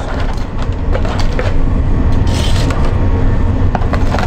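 A steady low hum of shop equipment, with a few light clicks of metal tongs as fried food is placed into a cardboard takeaway box.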